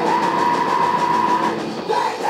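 Punk rock band playing live with electric guitar and drums, one long steady high note held for about a second and a half before it breaks off, over a steady drum beat.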